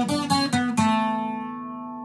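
Acoustic guitar playing a short picked fill: a few quick single notes, then the last notes left to ring and slowly fade.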